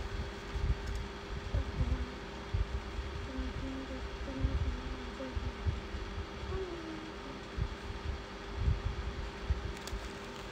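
Faint murmuring of a voice quietly reciting a prayer under the breath, in short low phrases, over a steady low hum and irregular low rumbles.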